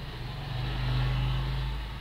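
Low rumble of a passing motor vehicle, loudest about a second in and then fading.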